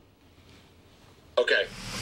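Near silence, a studio pause, for about the first second and a half. Then a man's voice says a short "OK" near the end.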